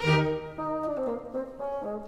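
Orchestral music: a loud chord struck at the start, then sustained notes under a moving melodic line, with brass to the fore.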